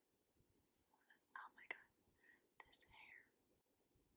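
Near silence, broken by faint whispering for a couple of seconds around the middle.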